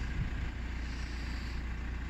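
Steady low background rumble with a faint hiss and no distinct event.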